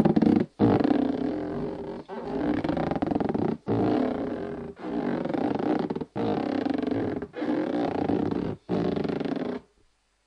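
Hand rubbing across an inflated rubber balloon, giving long squeaky groans in about eight strokes, each a second or so long with short breaks between; the rubbing stops shortly before the end.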